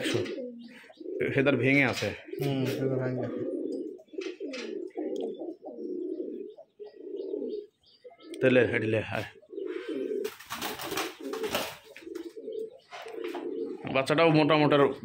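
Domestic pigeons cooing, a steady run of low, repeated coos. A scuffling noise comes in about ten seconds in and lasts a couple of seconds.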